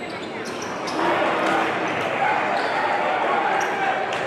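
Gym crowd of voices and shouts, getting louder about a second in as a free throw reaches the rim, with short high sneaker squeaks and a basketball bouncing on the hardwood court.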